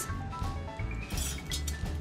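Background music with a steady beat and a tune of short high notes.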